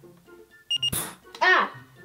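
An eye-test machine's sound effect: two quick high beeps, then a short, sharp burst of noise, followed by a girl's startled cry of 'Ah!' with a falling pitch. Soft background music plays underneath.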